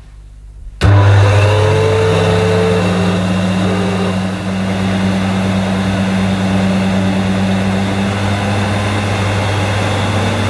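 Hoover SC056 Sensotronic 1400 cylinder vacuum cleaner switched on a little under a second in: its motor starts at once with a click, the whine rising over about a second as it comes up to speed, then runs loud and steady.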